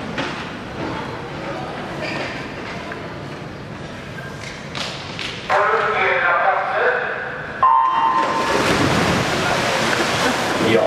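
Crowd murmuring in a large indoor swimming hall, then a race start. About seven and a half seconds in, a short electronic start beep sounds, and the crowd at once breaks into loud, steady cheering as the swimmers go off.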